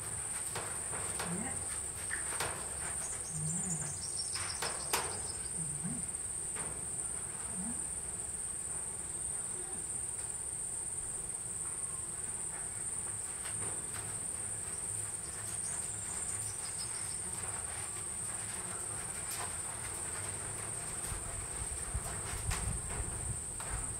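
Insects droning steadily at a high pitch, with a few soft clicks and knocks scattered over it.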